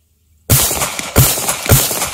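A handgun fires three shots in quick succession, about half a second apart, starting suddenly about half a second in after near silence.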